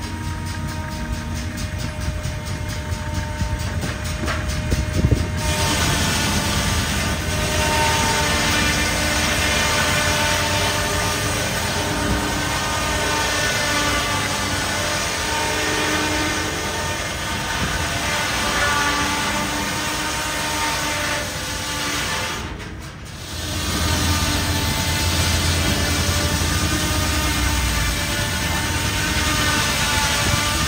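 Belt-driven circular sawmill running, its large circular saw blade cutting a log on the carriage, with a rapid even clatter for the first few seconds and then a steady whine of several tones that shift as the cut goes. The sound drops out briefly about three-quarters through and comes back deeper.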